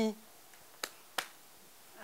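The tail of a sung note fades out, then two finger snaps, about a third of a second apart, near the middle.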